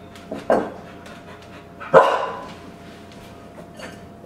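A Brittany dog barking: a short bark about half a second in and a louder one about two seconds in.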